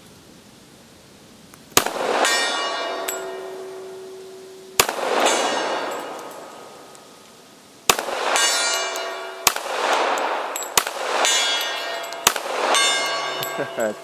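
Six shots from a Colt 1911 .45 ACP pistol, spaced one to three seconds apart. Each shot is followed a moment later by the long, pitched ring of a struck steel gong target.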